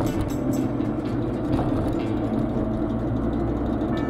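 Steady road and engine noise of a car driving along, heard inside the cabin.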